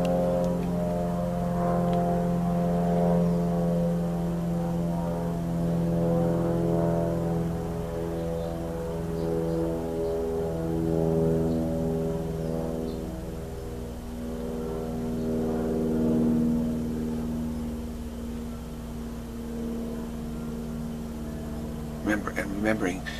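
A sustained drone of several steady held tones that swell and fade every few seconds. The low tone shifts slightly higher about two-thirds of the way through.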